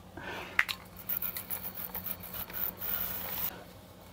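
A cloth rag being handled and rubbed: irregular scratchy rubbing that grows hissier from about a second in, with a sharp click about half a second in.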